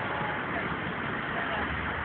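Steady street traffic noise, a continuous even rumble and hiss with no distinct events.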